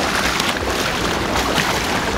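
Choppy sea water washing and splashing against the pier's rocks, with wind buffeting the microphone.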